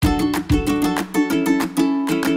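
Upbeat background music with plucked strings over a steady beat, cutting in suddenly at the start.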